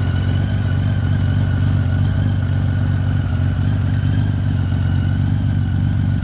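1998 Honda Valkyrie's flat-six engine idling steadily while warming up, heard through Mach-T exhaust pipes with the baffles fitted.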